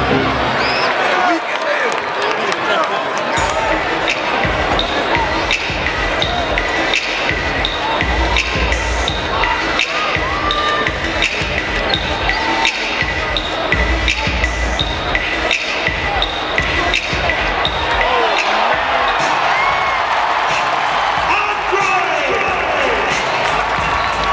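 Basketball game in a packed arena: steady crowd chatter and calls, with music over the PA and the ball bouncing on the hardwood court.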